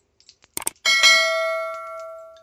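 Two quick clicks, then a single bell chime that rings out and fades over about a second and a half: the click-and-bell sound effect of an animated subscribe button.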